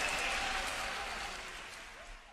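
Audience applause fading steadily away.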